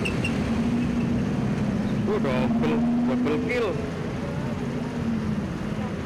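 Road traffic with motorcycle engines running close by: a steady low engine hum over the traffic noise, with brief voices between about two and four seconds in.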